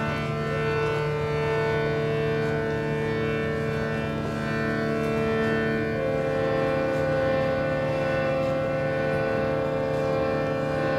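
Prepared harmonium playing a drone of several held reed notes at once. About six seconds in, one lower note drops out and a higher note comes in.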